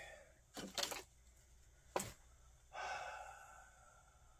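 Faint breathing sounds: a short breath about half a second in, one sharp click at about two seconds, then a sigh that fades out near the end.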